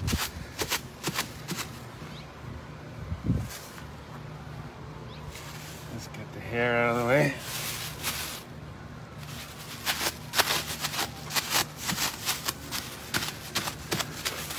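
Crumpled plastic bag crinkling and crackling in irregular bursts as it is pressed and dabbed against wet paint on a leather jacket. A short hummed vocal sound comes about halfway through.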